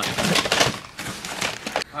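Plastic DVD and VHS cases clacking and scraping against each other as they are shuffled around in a cardboard box, a rapid run of small clicks.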